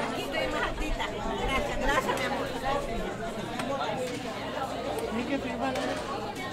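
Several people talking at once: overlapping conversation with no single voice standing out.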